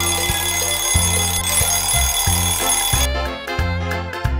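Alarm clock bell ringing over a short musical jingle with a pulsing bass line; the ringing cuts off suddenly about three seconds in while the music carries on.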